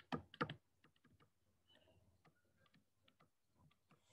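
Near silence with faint, irregular tapping and ticking of a stylus on a tablet screen as words are handwritten, after two short, louder clicks in the first half second.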